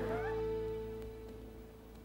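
Background music cue: a held chord that fades away over two seconds, with a few short bending notes just after the start.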